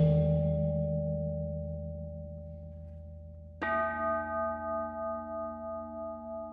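Metal temple bowls resting on cushions, struck and left to ring. A strike just before the opening, with a deep low tone beneath it, dies away slowly. About three and a half seconds in, a new stroke starts a bright, many-toned ring that wavers slowly as it sustains.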